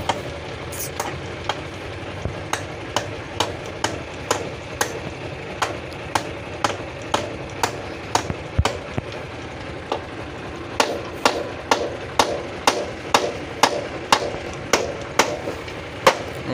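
Repeated sharp metal knocks as the tailgate latch of a sand-loaded tractor trolley is struck to knock it open, about two a second and irregular at first. The blows come quicker and louder in the second half, about three a second.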